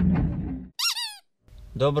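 Festival stage sound fading out, then about a second in a short, high squeak whose pitch wobbles up and down, lasting under half a second.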